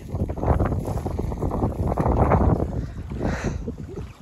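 Wind buffeting the microphone in gusts: a low rumbling noise that swells just after the start and is loudest around the middle.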